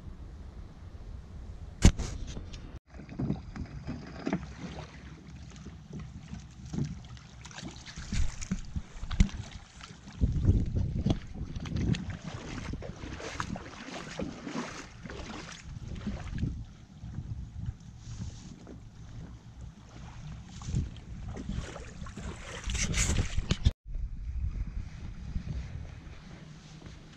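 Wind gusting on the microphone, with irregular knocks and scrapes from an inflatable dinghy being handled at the water's edge. A single sharp click about two seconds in is the loudest sound.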